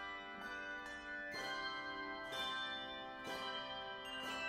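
Handbell choir playing: a new chord of bells struck about once a second, each ringing on over the last.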